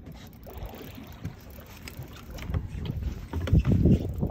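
Wind buffeting the microphone on a small boat on open water, with scattered faint clicks and a louder low rumbling gust about three and a half seconds in.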